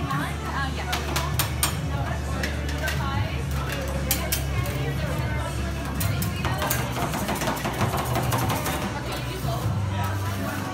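Background music with a steady bass line, over quick, irregular metallic taps of spatulas chopping rolled ice cream on a steel cold plate.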